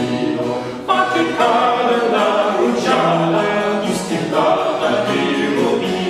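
Three male voices singing in harmony over a continuo of baroque cello, harpsichord and archlute, with a brief break between phrases about a second in.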